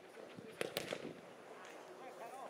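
Two sharp thumps of a football being struck hard, a fraction of a second apart, over faint outdoor background.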